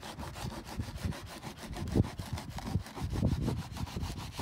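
A long wooden plank scraping back and forth across the top of a mold as it screeds wet concrete level, in uneven rasping strokes. There is a sharper knock about two seconds in.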